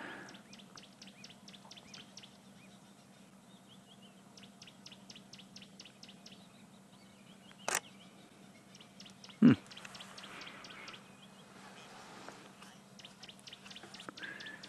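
Faint bird calls: several runs of rapid, high, evenly spaced ticking notes. Two brief sharp sounds come about a second and a half apart past the middle, the second the loudest.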